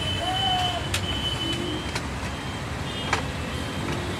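Street traffic idling at a stop: low, steady engine rumble from motorcycles and other vehicles close by, with a faint high steady beep that comes and goes and two light clicks.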